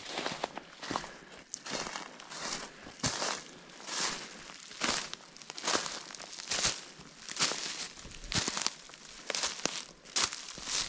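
Footsteps walking through dry fallen leaves on a forest floor, a crisp crunch with each step, a little over one step a second.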